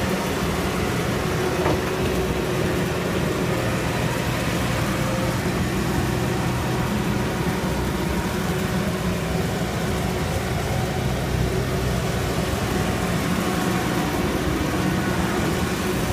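John Deere 260 skid steer's diesel engine running steadily as the loader is driven around.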